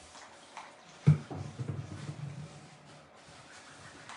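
Faint rubbing of a wipe on a craft mat, cleaning off chalk paste. There is a sharp knock about a second in, then a low, voice-like sound for about a second and a half.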